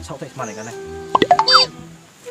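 Cartoon-style comedy sound effect: a quick run of sharp pops, then a whistle-like tone gliding up and back down, over background music.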